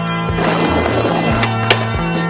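Skateboard wheels rolling on rough tarmac, then one sharp clack of the board near the end, over music with steady held notes.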